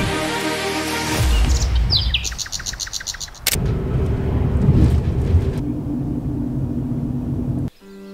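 A bird chirps in a quick high trill after music fades. From about halfway a steady low engine and road rumble is heard from inside a moving car, and it cuts off sharply just before the end.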